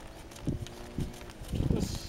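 A horse's hooves thudding on a soft dirt arena at a trot, about two beats a second.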